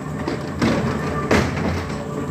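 Ghost train car rumbling along its track in the dark, with a sharp bang about one and a half seconds in and a softer knock just before it.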